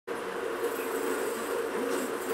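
A steady buzz with a slightly wavering pitch.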